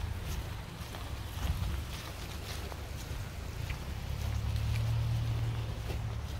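Low, steady rumble of wind on the phone's microphone, growing a little stronger about four seconds in.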